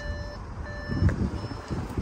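Skoda Scala's rear parking sensor beeping: short electronic tones repeating about every two-thirds of a second, three in all.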